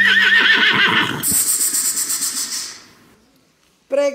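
A horse's whinny, a rising cry that breaks into a quavering neigh for about a second, played as a recorded sound effect at the end of the opening music. It is followed by a high hissing wash that fades out to near silence about three seconds in.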